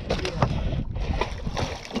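A red snapper flopping on a boat's fibreglass deck, giving a few short knocks and slaps, over a steady low rumble of wind and water.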